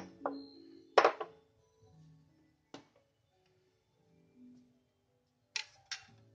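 Four sharp clinks of kitchenware, ceramic cups being handled and a ladle in a metal saucepan, the second one about a second in the loudest, over soft background music.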